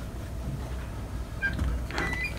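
Room tone: a steady low hum, with a few faint, brief high squeaks about one and a half seconds in.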